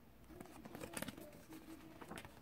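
Faint paper rustling and crackling as a page of a large picture book is turned by hand, a run of short clicks and crinkles.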